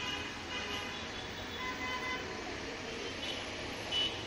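Steady background road traffic noise, with a faint, brief vehicle horn toot near the middle.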